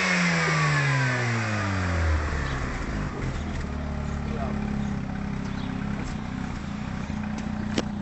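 Mazda RX-7 FD's twin-turbo 13B rotary engine dropping from a high rev back to idle over the first couple of seconds, then idling steadily. A single sharp click near the end.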